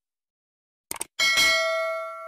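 Subscribe-button sound effect: a quick double mouse click, then a bell ding whose bright tones ring on and fade.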